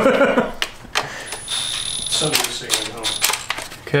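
Metal tools clicking and clinking on the valve cover bolts as they are run down, with a short steady powered whir lasting about a second, starting just over a second in.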